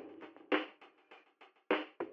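Drum-kit hits from a music track, a short irregular run of snare and bass drum strokes with two stronger hits, leading into background music.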